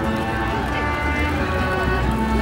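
A jumble of voices over a low steady rumble, with background music faint underneath.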